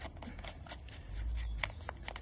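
Gloved hands handling a PVA mesh tube on a bait plunger: faint rustles and small clicks, with a brief low rumble a little past halfway and a couple of sharp ticks near the end.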